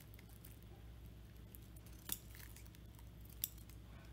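Scissors cutting loofah netting: a few faint, short snips, the clearest about two seconds in and another about a second and a half later.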